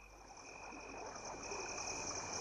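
Night-time ambience of crickets and other insects chirping in a steady, rapidly pulsing high chorus, fading in and growing louder.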